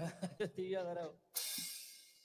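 A man talking into a microphone for about a second, then a single cymbal crash that rings and fades away.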